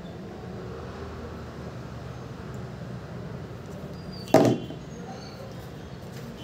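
A single short, sharp knock about four seconds in, from handling the phone's packaging and accessories on a table, over a steady low hum.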